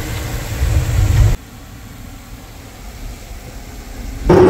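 A loud low rumble stops abruptly about a second and a half in. After it comes the steady low drone of a truck engine, heard from inside the cab while driving.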